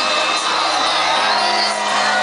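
Live concert music over a large PA, heard from inside the audience, with the crowd cheering and whooping over it.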